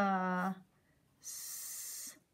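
A woman's voice sounding out the word 'must' one sound at a time: a held 'uh' vowel at the start, then a drawn-out 'sss' hiss from about a second in.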